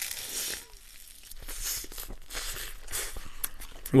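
Close-miked biting and chewing of a thick, saucy toast sandwich with cabbage salad, heard as a few soft, moist crunching bursts.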